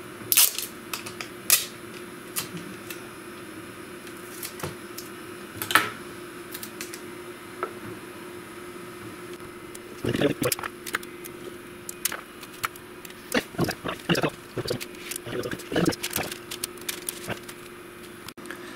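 Small pieces of adhesive tape being torn off and pressed down by hand over parchment paper: scattered clicks, crinkles and short tearing sounds, busiest in the second half. A steady hum runs beneath from the vacuum that holds the sheet down on the perforated bed.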